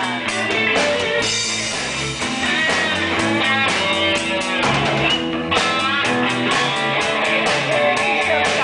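Live rock-and-roll band playing an instrumental passage: two electric guitars, a bass guitar and a drum kit. Sliding, bent guitar notes ride over a steady cymbal beat.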